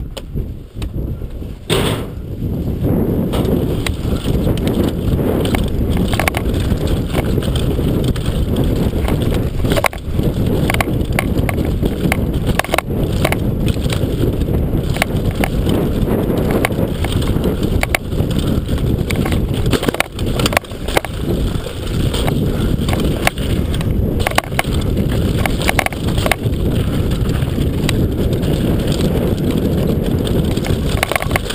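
Downhill mountain bike descending a rough dirt and rock trail, heard up close on the rider: a steady, loud rumble of tyres and wind with frequent rattles and knocks over the bumps. It is quieter for the first couple of seconds, then gets loud as the bike picks up speed.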